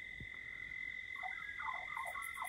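Faint dusk chorus of calling animals: a steady high-pitched trill throughout, joined about halfway through by short, repeated falling chirps.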